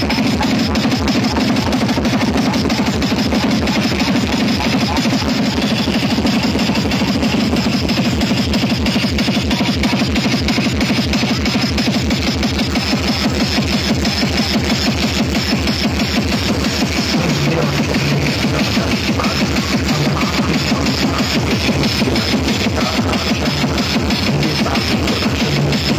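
Very loud electronic dance music blasting from large DJ sound-system rigs, a fast pounding beat with heavy bass running without a break.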